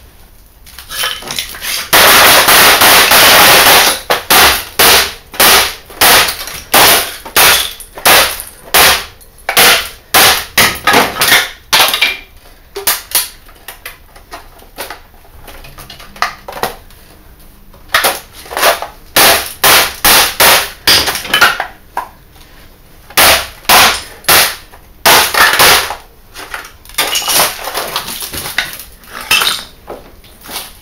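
Hammer blows smashing an HP LCD monitor's plastic housing, glass and metal frame: a long, loud crash about two seconds in, then a run of sharp strikes, often one or two a second, broken by short pauses.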